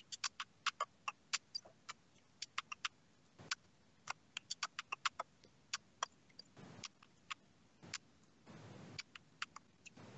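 Sharp, irregular clicks, a few a second and often in quick clusters, close to the microphone, with a soft rush of noise near the end.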